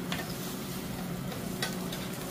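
Beef sizzling on a grill over charcoal, with two short clicks, one just after the start and one about three quarters of the way through.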